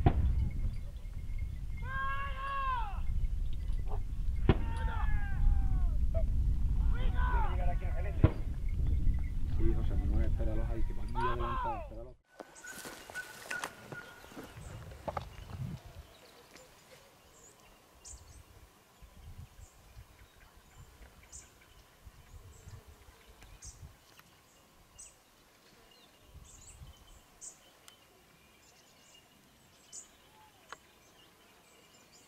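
Wind buffeting the microphone, with four long, downward-sliding baying calls from hunting hounds (podencos) working the drive. After an abrupt cut the sound drops to quiet open scrubland with faint, scattered bird chirps.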